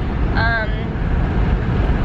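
Steady low rumble of road and engine noise inside a moving car's cabin, with a brief spoken sound about half a second in.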